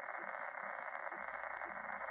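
Electronic soundtrack drone: a steady band of static with a soft, low pulse repeating about twice a second.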